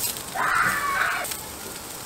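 Lamb skewers sizzling and crackling over hot charcoal as fat drips onto the coals, a steady faint hiss. A brief louder sound rises over it about half a second in and fades by just past one second.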